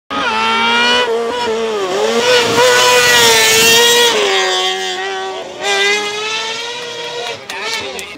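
Open tube-frame racing buggy's engine revving hard through a hairpin at a hill climb. Its high note dips and climbs again several times with throttle lifts and gear changes, then fades as the car drives off, with a few sharp cracks near the end.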